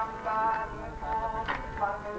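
Devotional music: a melody of held notes stepping in pitch, with a sharp percussive strike about once a second.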